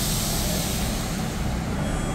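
RER commuter train standing at an underground platform, giving off a steady high hiss over a low rumble.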